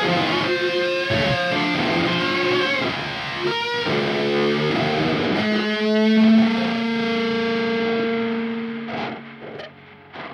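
Slow doom guitar music of layered guitars playing held notes. About halfway through, one long note rings out and then fades near the end, leaving a few quieter plucked notes.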